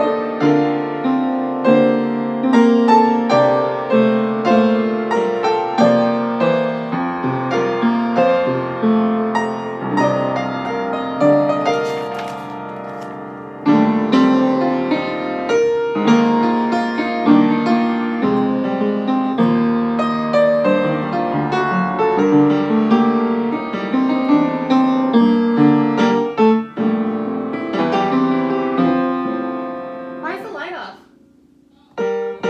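Upright acoustic piano played with chords and melody, a church prelude still being learned by sight. About twelve seconds in, the notes die away briefly before the playing picks up again.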